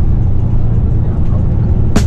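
Steady low rumble of a tour coach's engine and road noise heard from inside the passenger cabin, with faint background music over it.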